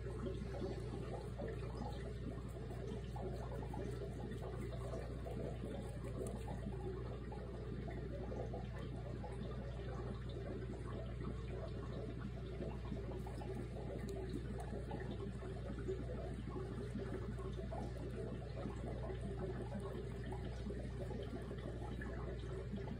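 Dwarf rabbit chewing a piece of dried apple, a fine continuous crunching over a steady low hum.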